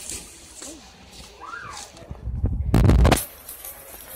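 Handling noise on a phone's microphone as the phone is moved: a loud rustling rumble lasting about a second, a little past halfway through.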